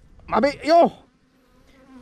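Wild African honeybees buzzing around a harvested honeycomb, a steady low hum that stands out plainly after a man's two short shouts of "yo" in the first second.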